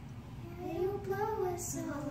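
A child's voice, a short wordless sound that rises and falls in pitch for about a second, followed by a brief hiss.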